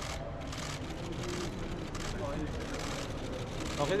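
Camera shutters of press photographers clicking in repeated bursts over a steady, noisy hall hubbub, with brief snatches of voices.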